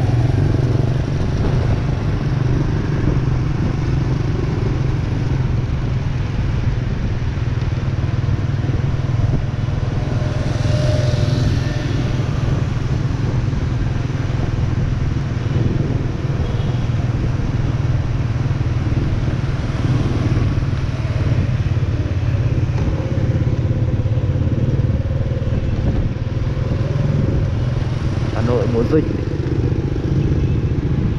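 Motorbike riding along a city street, heard from the rider's seat: a steady low rumble of engine and road noise, with a brief hiss about ten seconds in.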